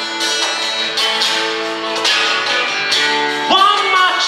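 Two acoustic guitars playing a slow song in a live trio, with a few light cajón hits. A sung note comes in near the end.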